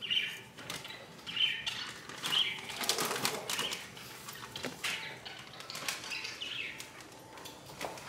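Light irregular clicks and rustles of a spoon working in a pot, with a few short high squeaks scattered through.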